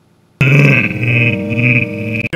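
A man's voice making one loud, drawn-out wordless vocal sound with a slightly wavering pitch, starting suddenly about half a second in.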